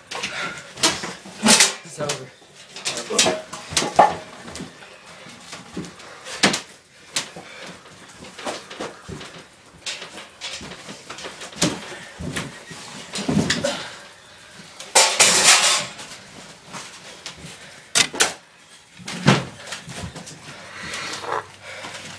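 Irregular thuds and clattering slams of wrestlers' bodies hitting a homemade wooden ring and its ropes, in a small echoing room. The longest and loudest is a crash a little past the middle.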